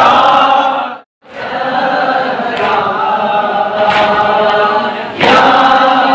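A group of voices chanting a noha, a Shia mourning lament, in unison. The chant drops out briefly about a second in, then resumes and grows louder near the end.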